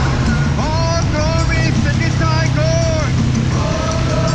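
Steady rumble of traffic, wind and road noise from riding through wet city streets. Over it, a voice sings a short phrase of a few drawn-out notes that rise and fall, from about half a second in until about three seconds in.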